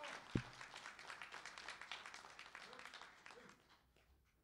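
Audience applause, faint, thinning out and dying away just before the end, with a single sharp thump about a third of a second in and a few faint voices late in the applause.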